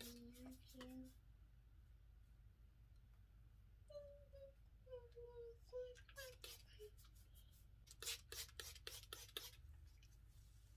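Faint, short spritzes from a trigger spray bottle misting hair treatment onto the scalp, several in quick succession over the last few seconds. A soft humming voice sounds near the start and again around the middle.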